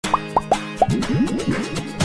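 PTV Kids station ident jingle starting abruptly from silence. It opens with a run of quick rising cartoon 'bloop' sound effects, four higher ones and then a fast flurry of lower ones, over a light music bed.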